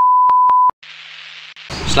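Test-card tone over colour bars: one steady, high-pitched beep, lasting under a second with a couple of clicks in it and then cutting off. A steady hiss follows.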